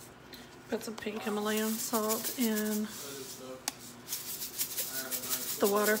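Salt shaken from a container into a pot of water: a dry rattling of grains in quick repeated shakes, with a woman talking over it.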